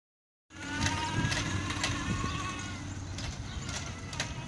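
Electric motor of a solar-powered reverse trike whining as it pulls away, the whine dropping slightly in pitch and fading after a couple of seconds. Footsteps on the concrete sidewalk click about twice a second.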